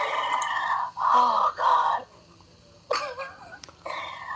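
A person's high-pitched, wordless vocal sounds: two shrieking bursts of about a second each, then a pause and a shorter, weaker sound near the end.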